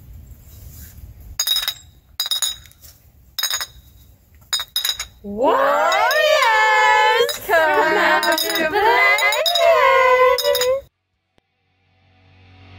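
Glass bottles clinked together several times, sharp ringing clinks about a second apart. Then a voice calls out in a loud, high sing-song with long drawn-out notes, stopping abruptly.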